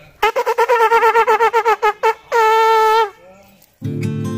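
A small brass horn blowing a call: a fast run of short repeated notes, about eight a second, then one long held note that drops slightly as it ends. Acoustic guitar music starts just before the end.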